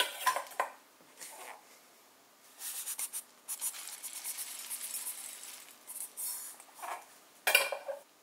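Chopped peanuts poured from a bowl onto sliced jujubes in a glass mixing bowl, making a pattering rush of falling pieces through the middle. There are clinks of dishware in the first second and a louder clink near the end.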